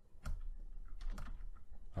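Typing on a computer keyboard: a run of separate keystrokes.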